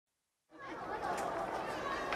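Background chatter of many people talking at once, fading in from silence about half a second in.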